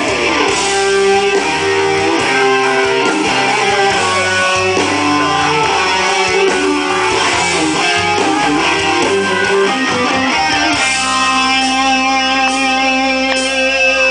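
Live rock band with an electric guitar playing a lead line of bending, gliding notes over bass and drums. About eleven seconds in the lead gives way to long held chords.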